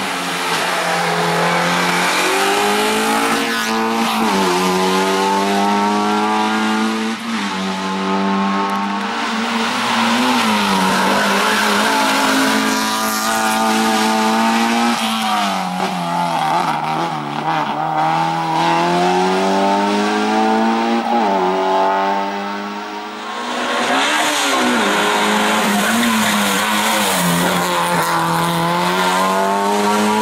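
Racing Alfa Romeo hatchback's 1600 cc engine revving hard, its pitch climbing and falling again and again as it accelerates and lifts between slalom cones, with several short sharp drops in the revs.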